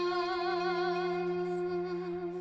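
A woman singing one long held note with vibrato, over a steady low accompaniment tone.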